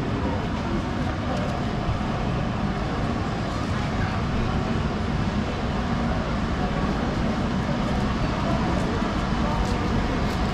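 Busy city-street ambience: the chatter of passers-by over a steady low traffic rumble.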